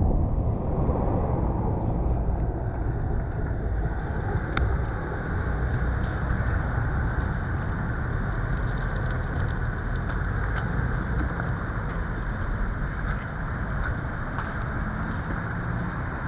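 Steady low rumble of wind on a ground-level microphone, with a few faint ticks.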